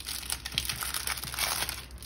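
Clear plastic sticker bag crinkling in irregular crackles as hands fumble to get it open.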